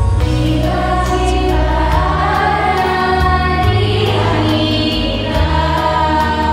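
A choir singing a slow song over instrumental accompaniment.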